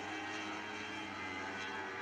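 Lightning sprint cars' 1,000cc motorcycle engines running at high revs on track: a steady drone holding one pitch.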